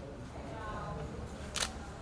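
Camera shutter clicking once, sharply, about one and a half seconds in, over faint voices.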